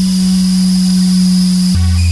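Buchla modular synthesizer playing a held low electronic note that steps down to a lower pitch near the end, with a faint steady high tone above it.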